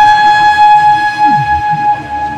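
Electric trumpet holding one long, steady, high note over a programmed electronic beat, with a deep drum hit that falls in pitch about a second and a half in.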